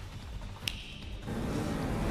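Car engine sound effect revving up, coming in about a second and a half in and growing louder, after a short sharp click.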